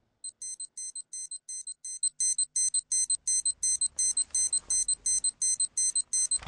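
Electronic alarm clock beeping: a high, shrill beep repeating about four times a second, getting louder about two seconds in.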